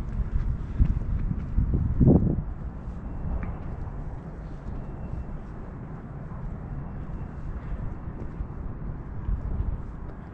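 Wind buffeting the camera microphone: an uneven, gusting low rumble, with a short louder sound about two seconds in.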